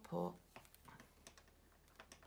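Circular knitting needles clicking lightly as stitches are worked, a scatter of faint, irregular ticks.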